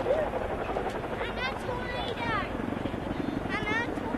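Boeing CH-47 Chinook tandem-rotor helicopter flying past low, its rotors and turbine engines giving a steady heavy noise. People's voices are heard over it at intervals.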